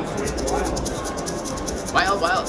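Siberian Storm slot machine running its free-spin bonus: reels spinning and landing with the game's sound effects, a fast ticking under them. Voices chatter in the background.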